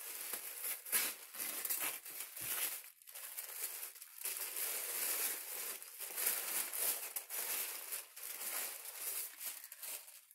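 Gift wrapping paper being torn off a box and crumpled by hand: continuous crinkling dense with sharp crackles, with brief lulls about three and four seconds in.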